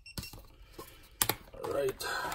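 Sharp plastic clicks from the cap of a quart bottle of automatic transmission fluid being twisted open, in two quick pairs, with a short murmur of voice near the end.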